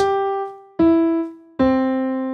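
Ableton Live's Grand Piano instrument sounding three single notes as they are previewed in the piano roll. The notes are G, E and C, falling one after another about a second apart, each decaying.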